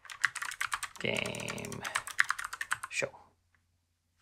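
Rapid typing on a computer keyboard: a fast run of keystrokes that stops about three seconds in.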